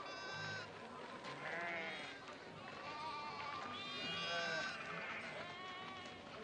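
A flock of sheep bleating, about five separate wavering bleats, one after another.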